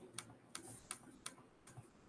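Faint, quick clicks of a computer mouse, about three a second, thinning out near the end: repeated clicks on an undo button.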